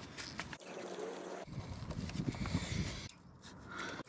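Faint handling noise with a few small clicks, as gloved hands fit a bolt to the thermostat housing on a Ford Zetec engine.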